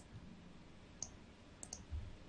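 Faint computer mouse clicks: one at the start, one about a second in, and a quick pair near the end.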